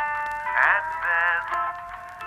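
A song played live: a man singing a melody of held, wavering notes over band accompaniment.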